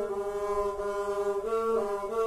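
Two banams, Santal bowed folk fiddles, played together, holding long bowed notes that step up and down in pitch, the two parts sounding at once.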